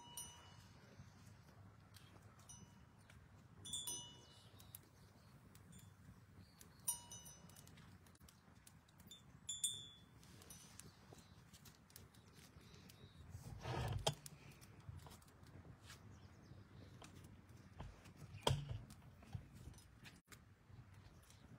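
Small brass hand bell rung in short bursts during arati, four times about three seconds apart. A short rumbling rustle follows about fourteen seconds in, and a sharp knock near the end.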